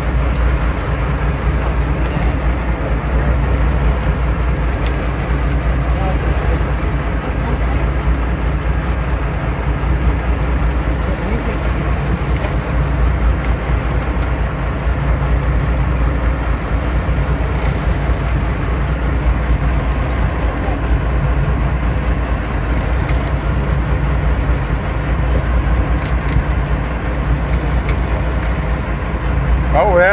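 Sportfishing boat's engine running steadily under way, a low even drone with water noise over it.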